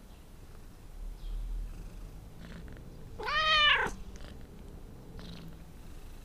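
An animal's call: one pitched cry that rises and then falls, lasting under a second, about three seconds in, over a low hum.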